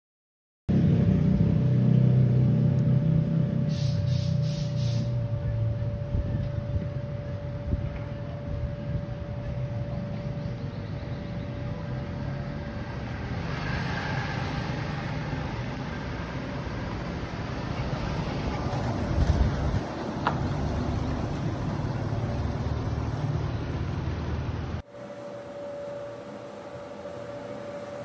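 1978 Chevrolet Cheyenne pickup's engine idling with a steady low rumble. A brief high chirping comes about four seconds in, and the sound drops to a quieter street background near the end.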